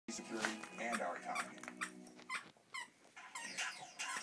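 A dog calling out in a series of short vocal sounds that bend in pitch.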